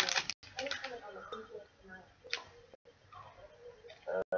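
Plastic sweet wrapper crinkling as chewy sweets are unwrapped and handled, in scattered crackles with a brief rustle about two seconds in, over faint mumbling.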